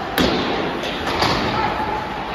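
Ice hockey puck and stick impacts during play: one sharp, loud hit about a fifth of a second in, ringing out in the rink's echo, then a few lighter clacks about a second in.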